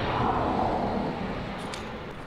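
A vehicle passing by: a rushing noise that swells about half a second in and slowly fades.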